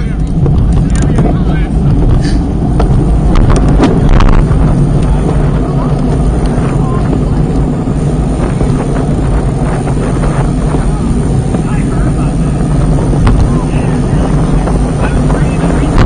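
Steady wind rumble on an action camera's microphone while riding a road bike, mixed with road and bike noise, with a few sharp rattles in the first four seconds.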